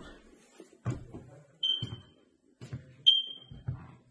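Two short high-pitched electronic beeps about a second and a half apart, each fading out quickly. Under them are soft, regular footsteps on a wooden floor.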